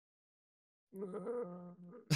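Silence, then about a second in a man's voice holding a drawn-out, steady-pitched hesitation sound while searching for words.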